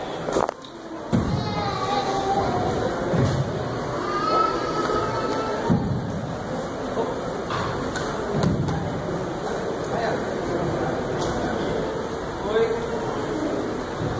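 Scattered thuds of karate strikes, blocks and feet landing on a wooden stage during a partner bunkai drill, several seconds apart, over a steady background of voices.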